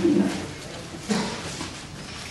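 Two short, low hummed voice sounds about a second apart, like a murmured "mm-hmm", over the rustle of Bible pages being turned.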